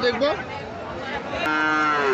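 Sahiwal bull mooing: one call begins about one and a half seconds in and holds a steady pitch.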